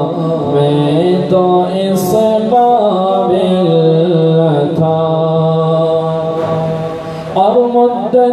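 A man's solo voice singing Urdu devotional verse (naat-style) unaccompanied into a microphone, in long, drawn-out notes that slide ornamentally from one pitch to the next, with a short breath about seven seconds in.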